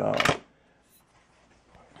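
A short sharp click of the pistol's slide being handled as it comes off the frame, over the end of a spoken word, then quiet with only faint handling noise.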